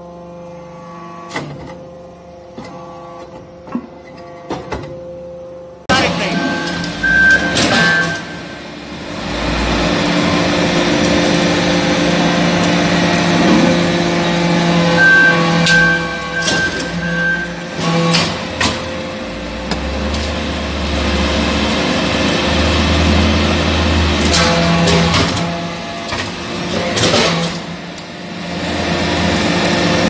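Hydraulic metal-chip briquetting press running: a steady hum of its hydraulic power unit with a few clicks. About six seconds in, it gives way abruptly to much louder machine noise with a low rumble and repeated sharp knocks as the ram compacts chips into briquettes.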